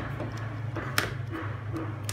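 A single sharp click about a second in, from a multimeter probe being worked against a phone charger's barrel plug, over a steady low hum.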